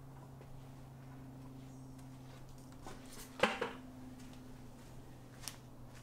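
A faint steady low hum, broken by a short clatter of two or three knocks about halfway through and a single sharp click near the end.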